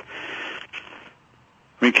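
A man's breath drawn in at the microphone: about a second of soft, breathy noise, then a moment of near silence before the talk resumes near the end.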